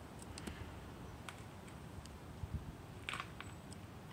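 Quiet background with a few faint clicks, and a short rustle about three seconds in, from handling near the microphone.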